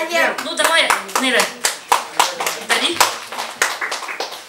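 A small group of people applauding by clapping their hands, with a few voices over it. The clapping thins out and fades toward the end.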